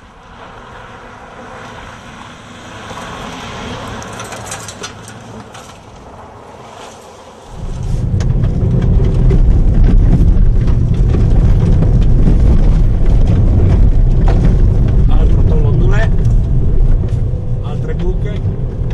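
Fiat Bravo driven fast on a gravel road. It is first heard from outside, swelling and fading as it slides past. About seven seconds in there is a sudden switch to a loud, steady low rumble heard inside the cabin as it runs over the rough dirt road, with scattered clicks.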